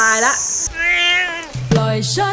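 A domestic cat's single meow, about a second long. Music with a beat starts near the end.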